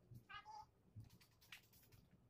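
A single short, faint cat meow about a third of a second in, followed by a couple of light clicks.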